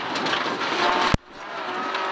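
Rally car's engine running hard, heard inside the cabin. About a second in there is one sharp knock, after which the engine sound drops away suddenly and builds back up.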